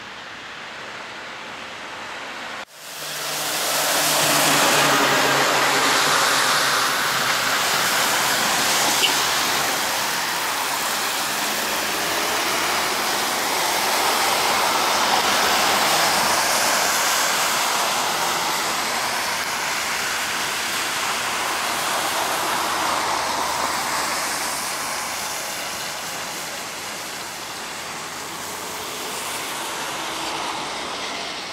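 A trolleybus and road traffic passing on a wet road: a steady wash of tyre hiss and vehicle noise that sets in abruptly about three seconds in, then slowly swells and fades.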